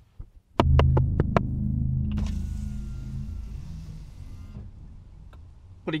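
A car's electric side window being lowered: a quick run of clicks, then the window motor hums steadily for a few seconds and slowly fades as the glass slides down.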